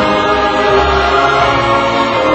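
Choral music, voices holding long sustained notes over a low steady backing.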